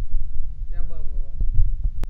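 A low, uneven rumble throughout, with a brief voice about a second in and two light knocks near the end.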